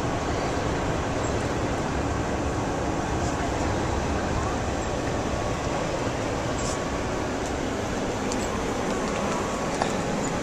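Steady drone inside a moving coach bus: engine and tyre noise on a wet, slushy highway.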